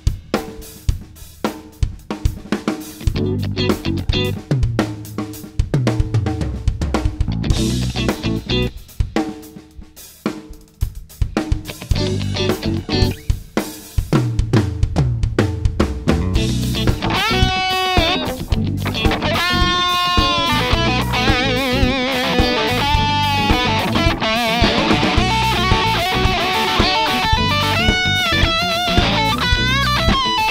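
Drum kit played hard along with a rock backing track that carries electric guitar. The first half is broken up, with stop-start hits and short gaps. From about halfway a steady driving groove sets in under lead guitar lines that bend in pitch.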